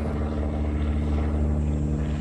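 Engine and propeller of a banner-towing light plane, a steady, even hum with no change in pitch.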